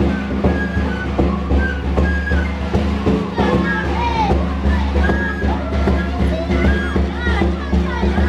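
Andean caja frame drum struck with a stick in a steady beat, with a small pipe played over it and a group singing coplas in high voices that slide in pitch.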